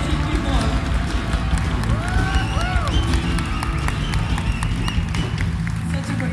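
Three-piece punk rock band playing live: drums and bass guitar keep a steady driving beat under acoustic guitar. A couple of rising and falling voice-like calls come through about two seconds in.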